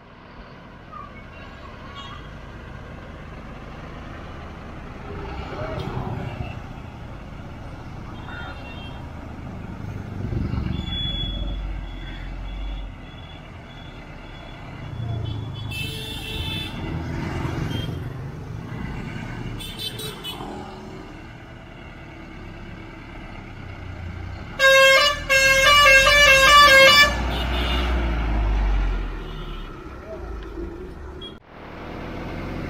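Road traffic passing, with two short horn toots midway and then a loud, rapidly pulsing multi-tone vehicle horn for about two seconds near the end, over the rising engine rumble of a bus drawing close.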